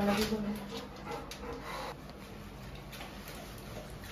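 A Labrador whimpering, mixed with a woman's voice in the first half second, then a quieter stretch with a few faint clicks.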